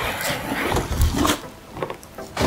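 Plastic packaging rustling and cardboard scraping as a plastic-wrapped duffel bag is pulled up out of a tall cardboard box. The sound is irregular, with a few sharp knocks, and it eases off near the end.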